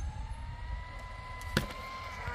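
Tamiya TT02 radio-controlled car's electric motor whining as the car accelerates away, the pitch rising and then holding steady at speed. A single sharp click comes a little after halfway.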